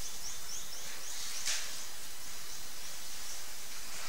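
Steady hiss of room tone in a quiet church hall, with a quick run of faint, high, rising chirps in the first second and a short rustle about one and a half seconds in.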